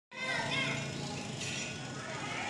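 Young children's voices chattering and calling out, high-pitched, with a brief sharp click partway through.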